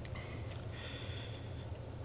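Quiet room tone with a steady low hum and no distinct handling sounds.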